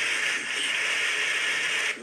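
Audience applauding, played back through a phone's small speaker: a steady wash of clapping that cuts off suddenly at the end.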